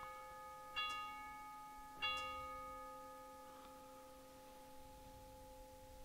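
Altar bell struck twice, about a second in and two seconds in, each strike ringing out slowly over the ringing of a strike just before. It is rung at the elevation of the consecrated host.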